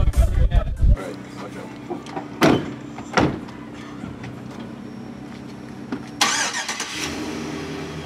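A full-size passenger van's engine idling with a steady low hum. Two sharp knocks come about two and a half and three seconds in, and near the end a longer sliding rush that fits the van's sliding side door rolling shut.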